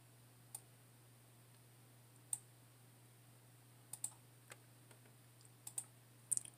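A few sharp clicks of a computer mouse against a faint low hum: one about half a second in, another past two seconds, a pair around four seconds and a quick run of three near the end.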